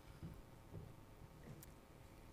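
Near silence: hall room tone with a few faint low bumps.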